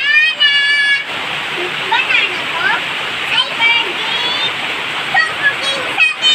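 Heavy rain pouring down in a steady, loud rush. A child's high voice rings out over it in the first second, and short bits of children's voices come and go after that.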